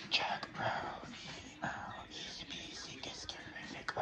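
A person whispering, breathy and without voice.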